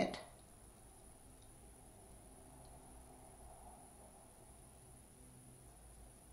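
Near silence: quiet room tone with a faint steady high-pitched whine, after a spoken word ends in the first moment.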